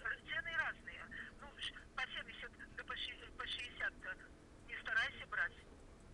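A person's voice at the far end of a phone call, heard thin and faint through the telephone, talking in short phrases.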